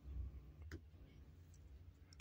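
Near silence: a pause in speech, with a faint low rumble at the start and one small click just under a second in.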